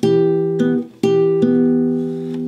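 Acoustic guitar fingerpicking an E minor barre chord at the seventh fret: two strings plucked together, then a single string added about half a second later, the pattern played twice with the notes ringing on.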